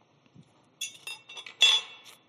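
Handling noise at the lectern: a quick run of sharp clinks and knocks starting about a second in, with a brief high ringing tone near the end.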